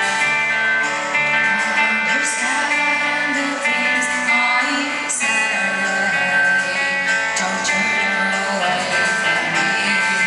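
Live rock band playing with strummed guitar through a concert sound system, and a female lead voice singing over it.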